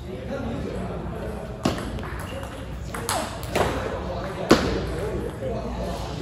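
Table tennis ball clicking off bats and table: four sharp clicks spread unevenly over a few seconds, the last the loudest.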